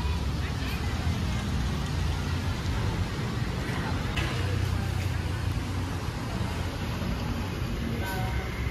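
Steady low rumble of road traffic and running vehicle engines.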